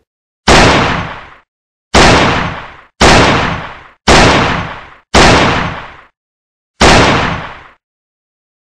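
Six gunshot sound effects from a handgun. Each is a sharp bang that dies away over about a second. The first five come about a second apart and the last after a longer pause.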